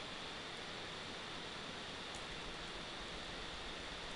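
Steady hiss of the recording's background noise, room tone with no distinct events apart from a couple of very faint ticks.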